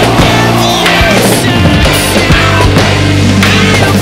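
Drum kit played along to a loud, heavy post-hardcore rock track, with fast cymbal and drum hits over distorted guitars.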